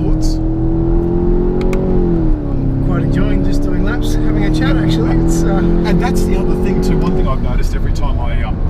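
Skoda Octavia RS 245's turbocharged four-cylinder engine pulling hard on track, heard from inside the cabin over a low road rumble. The revs climb, drop sharply with a quick upshift about two seconds in, climb again, and ease off about seven seconds in.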